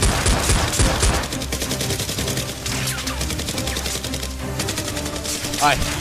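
Rapid automatic-gunfire sound effects, heaviest in the first second or so, over steady background music.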